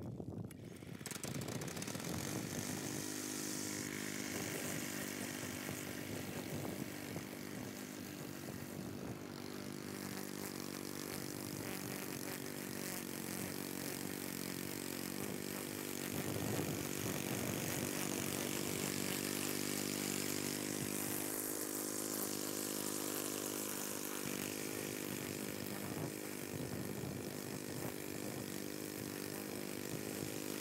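Cub Cadet mower's engine comes up over the first couple of seconds, then runs steadily with small changes in pitch, mowing.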